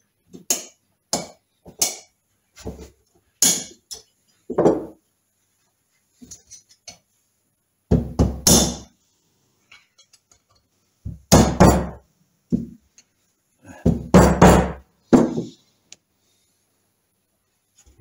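Irregular hammer knocks and metallic clinks, a dozen or more blows, some in quick pairs, with quiet gaps between, as a part is tapped home into the heated Triumph Trident gearbox inner casing.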